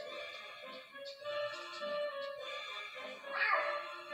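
Film score music playing through a TV speaker, with a short cartoon cat vocalization a little past three seconds in.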